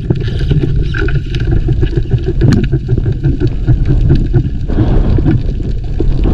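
Underwater noise picked up by a diver's camera: a steady low rumble of moving water, with a few sharp clicks.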